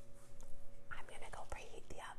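Quiet room tone with a faint steady hum. A soft, breathy voice sound comes about a second in, and a light knock follows shortly after.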